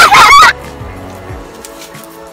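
A boy laughing loudly for about half a second, high-pitched and wavering, then background music with steady held notes.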